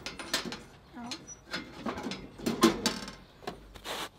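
Pizza peel knocking and scraping at the mouth of a small pellet pizza oven as a pizza is taken out: a run of irregular short knocks and clicks, the loudest about two and a half seconds in, with a brief murmur about a second in.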